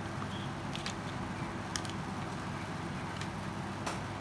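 A few faint, scattered clicks of a telescopic carbon fishing rod's metal line guides and tip section being handled, over a steady low background hum.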